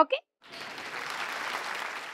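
A crowd applauding, starting about half a second in and growing a little louder.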